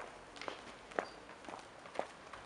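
Footsteps with hard soles clicking on stone steps, evenly paced at about two steps a second.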